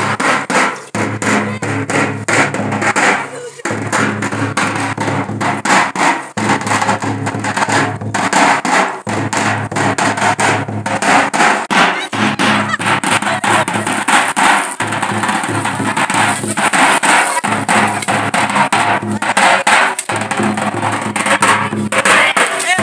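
Music with fast, continuous drumming and voices.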